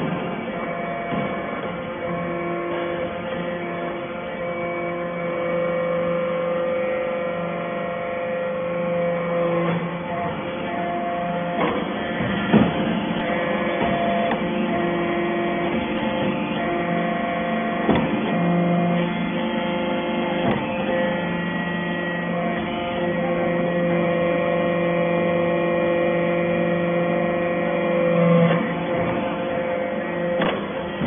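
Hydraulic briquetting press running: the electric motor and pump of its hydraulic power unit give a steady hum with a whine, swelling every few seconds as the press works through its cycle, with a few sharp knocks.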